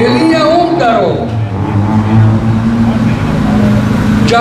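Peugeot 106 N2 rally car's engine running at low, steady revs as the car rolls up onto the start podium ramp, with a brief voice early on.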